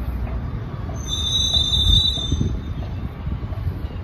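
Low wind rumble on the microphone throughout, with a high, steady squeal of several pitches at once lasting about a second and a half, starting about a second in.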